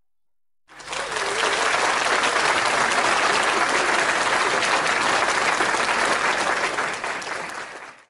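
Applause, starting suddenly about a second in, holding steady, and dying away at the very end.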